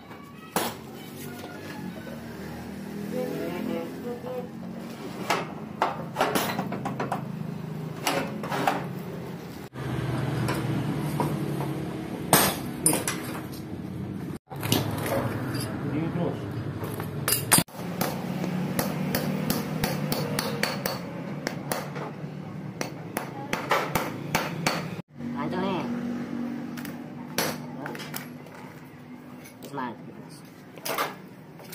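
Galvanised steel folding-door hardware (brackets, hinge pin, bolt and nut) being handled, with scattered sharp metallic clinks and knocks over a steady low background hum.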